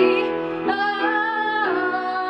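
A woman singing a song live into a microphone, with piano accompaniment. A long note starts just under a second in, is held for about a second, then steps down to a slightly lower note.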